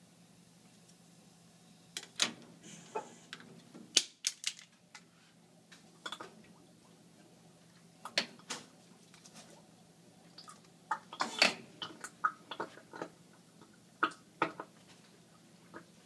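About a dozen sharp pops at irregular intervals from small acetylene–chlorine explosions as the two gases' bubbles meet and ignite in a tall water-filled glass cylinder, the loudest about four seconds in and in a cluster around eleven seconds in. A low steady hum lies underneath.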